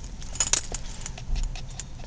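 Metal tags on a small dog's collar jingling in light, scattered clinks, with a cluster about half a second in.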